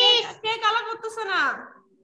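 A child's high-pitched voice speaking for about a second and a half, then breaking off.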